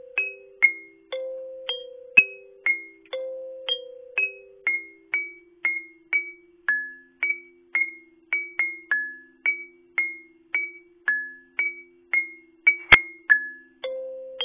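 Digital kalimba app playing a slow, simple melody of plucked kalimba-like notes, about two a second, each ringing briefly and fading. Two sharp clicks sound over the notes, one about two seconds in and one near the end.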